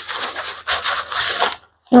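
Nylon backpack fabric rustling and rubbing under a hand as the bag is handled and its pockets opened, in two spells over the first second and a half.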